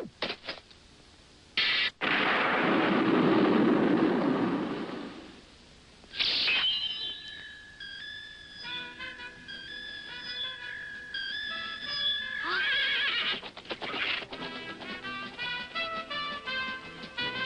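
Horse whinnying twice, once about six seconds in and again near thirteen seconds, over soundtrack music whose melody enters after the first whinny. Before that comes a loud rushing burst of noise lasting about three seconds.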